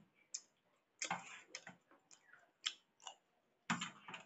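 Metal spoon clinking and scraping on a stainless steel plate while scooping pasta, with chewing, in irregular short bursts.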